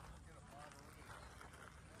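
Near silence: faint outdoor background noise.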